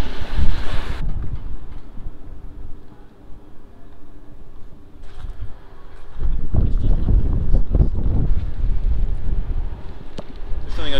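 Wind buffeting the microphone: a low, gusty rumble that eases off early on and comes back strongly from about six seconds in, with a faint steady hum beneath it in the quieter stretch.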